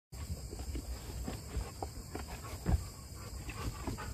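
Feet working into rubber rain boots on a doormat over a wooden porch: irregular soft thumps and scuffs, the loudest near the end, over a low rumble.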